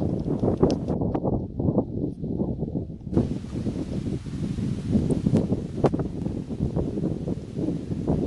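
Wind buffeting the microphone outdoors: an uneven low rumble with scattered knocks and clicks.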